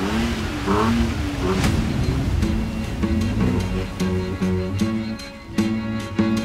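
Toyota Tacoma pickup's engine revving up and down as the truck pushes through deep snow and slush, strongest in the first couple of seconds. Background music with a steady beat plays over it.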